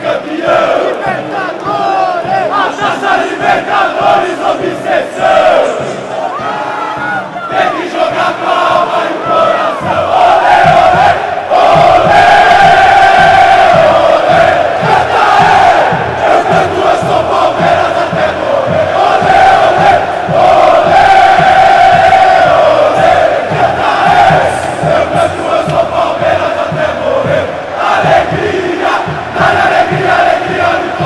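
Stadium crowd of football supporters singing a chant together at full voice, recorded from among them in the stands. It grows louder and fuller about ten seconds in.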